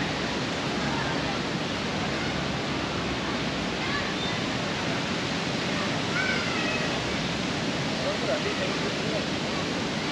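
Steady rushing outdoor ambience of a city park, with faint distant voices of people now and then.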